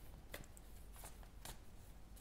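Deck of tarot cards being shuffled by hand: a few faint, quick card flicks about half a second apart.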